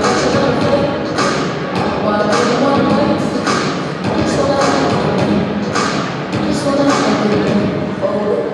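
Background music and a murmur of voices echoing in a large hall, with a few thuds.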